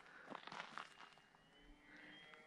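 Near silence: the faint, steady high whine of a small electric-powered RC warbird's motor and propeller flying at a distance, with a few faint ticks.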